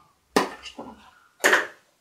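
Two sharp plastic clicks about a second apart, with faint fiddling between, as the high-beam bulb connector is worked loose and unplugged from a Nissan Leaf headlight housing.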